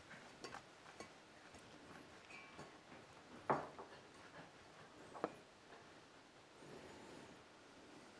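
Hands tossing a dressed herb salad in a stainless steel bowl: faint rustling of the leaves with a few small clicks, and two sharp taps against the bowl, the loudest about three and a half seconds in and another a little after five seconds.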